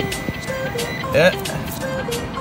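Metal detector tones: a few short, steady beeps at one low pitch, with a brief warbling tone about a second in.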